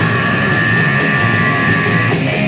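Hardcore punk band playing loud and fast, with distorted guitar and a high held note over the top that stops near the end.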